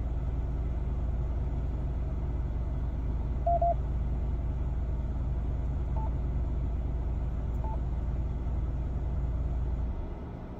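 Steady low rumble of a car idling, heard inside the cabin. A quick double beep from the Yaesu FTM-400XD radio comes about three and a half seconds in. Two fainter single key beeps follow, at about six and seven and a half seconds, as its touchscreen is pressed.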